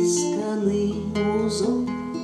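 Acoustic guitar playing a picked chord accompaniment in an instrumental passage of a song, with a low bass note ringing under the chords from about halfway through.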